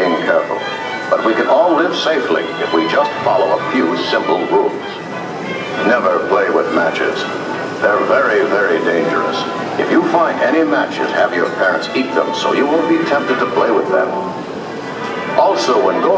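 Soundtrack of an old black-and-white film clip played through a concert PA: music with voices mixed in.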